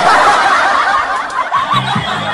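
Laughter, high and quick, over music; a dance track's steady low beat starts about a second and a half in.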